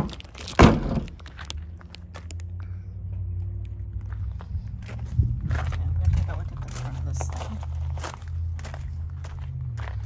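Two sharp thumps in the first second, a car door being shut, then footsteps on gravel with a low steady hum underneath.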